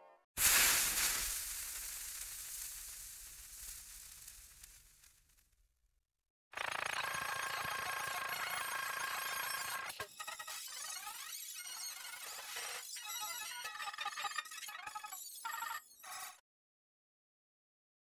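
Effects-processed logo jingle audio: a sudden loud crash-like noise that fades away over about five seconds, then after a short gap a ringing, tone-filled jingle that turns choppy and stuttering and cuts off suddenly.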